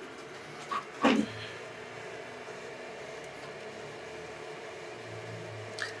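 Qidi Tech X-one2 3D printer running a fast print under Klipper, its stepper motors and fans giving a steady hum with a few held tones. A short louder sound comes about a second in.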